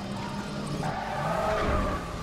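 Heavy truck engine running hard, with tyres skidding and squealing, in a film soundtrack mix.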